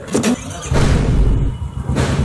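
A loud, rough engine-like noise comes in about three-quarters of a second in, after a short burst at the start.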